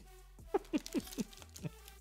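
A man's soft chuckle: a handful of short, quick notes, each falling in pitch, over about a second.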